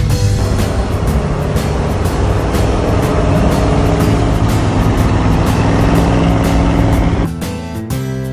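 A 1976 Chevrolet K10 pickup's engine and exhaust running loud, mixed with background guitar music. About seven seconds in, the vehicle sound cuts off and only the guitar music remains.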